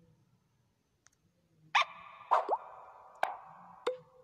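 Cartoon sound effects: after near silence, a run of four sharp pops with a short rising slide between them, starting a little under halfway in.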